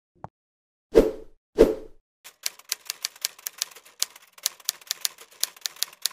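Sound effects for an animated logo: two pops about half a second apart, then a rapid run of typewriter-style key clicks for about four seconds as the text appears.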